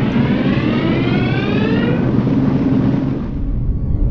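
Logo-animation sound effect: a loud, deep rumble with a whine rising steadily in pitch over the first two seconds, like a jet engine spooling up; the high part fades out about three seconds in.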